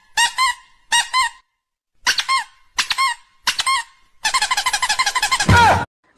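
High-pitched squeaks in quick pairs, five pairs about 0.7 s apart, then a fast run of squeaks that ends in one long falling squeal.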